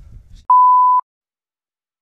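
A single electronic beep added in editing: one steady, high-pitched pure tone about half a second long that stops abruptly, leaving total silence.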